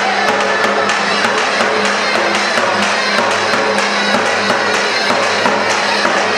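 Loud live folk dance music for a halay line dance: a sustained melody over a steady beat of about three strokes a second.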